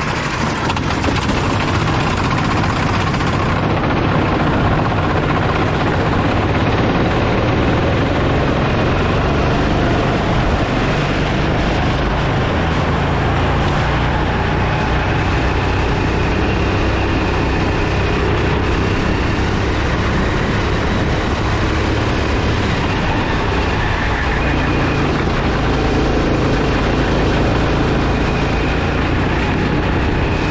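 Rental go-kart engine heard from the kart's own onboard camera, building up over the first second or so as the kart moves off, then running steadily at racing speed.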